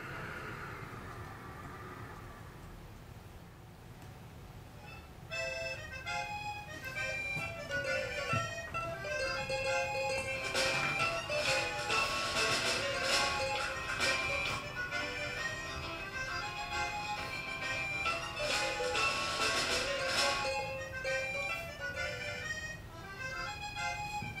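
Computer-synthesised orchestral sonification of a yellow spirit level: several held instrument-like notes sound together, changing and swelling as the level is tilted. Before it, in the first few seconds, a hissy synthetic tone from a mass-spring oscillator sonification fades away.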